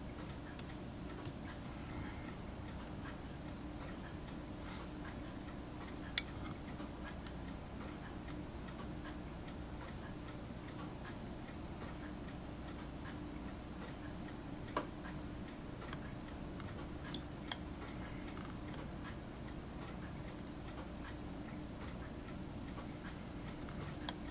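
Quiet room with a steady low hum and a few faint, sharp clicks of fine steel tweezers handling a tiny plastic model part; the sharpest click comes about six seconds in.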